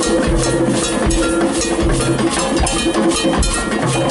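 Live Latin band playing, the cowbell beating a steady pattern over timbales, congas and held notes from the other instruments.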